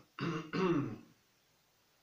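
A man clears his throat in two quick bursts, the second louder.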